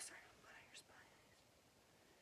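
Near silence: a faint whisper in the first second, then quiet room tone.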